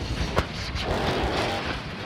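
Rumbling roar of the Starship SN8 prototype's fireball after it struck the landing pad and exploded, with a sharp crack about half a second in.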